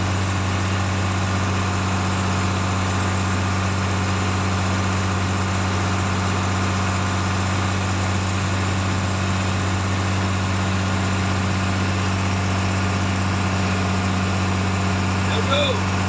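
A purse-seine fishing boat's diesel engine running steadily under way: a constant, unchanging low drone.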